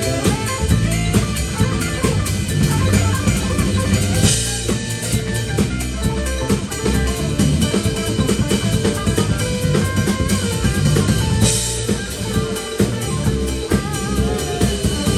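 A live band playing an instrumental piece: drum kit with bass drum and rimshots under electric bass and electric guitar, with no break in the music.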